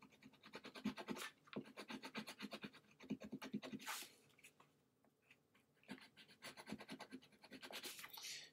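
Colored pencil scratching on paper in quick, short back-and-forth strokes, with a pause of about a second and a half a little after the middle.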